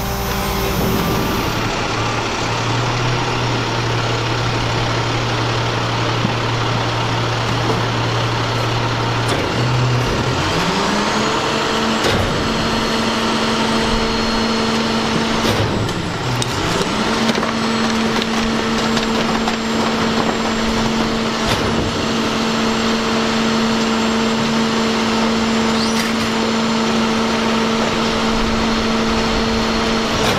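A rear-loading garbage truck's diesel engine runs steadily at a low speed, then about ten seconds in revs smoothly up to a higher steady speed and holds it, dipping briefly once midway. This is the raised engine speed that drives the truck's hydraulic packer. A few clanks of metal sound over it.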